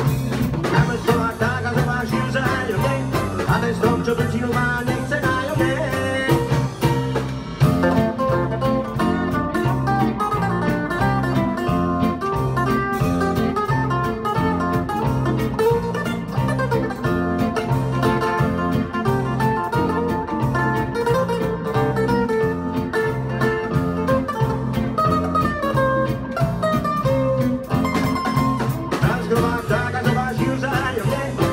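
Live small band playing an instrumental passage of a swing-style song: acoustic and electric guitars, electric bass and drum kit, with a steady beat under a moving melodic line.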